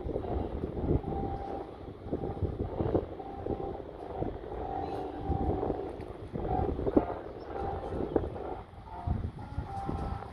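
Wind buffeting the microphone in uneven gusts, with faint short tones coming and going above the rumble.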